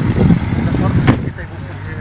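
A car driving past on the road, its engine and tyre noise fading away over the first second or so, with faint voices around it and a short click about a second in.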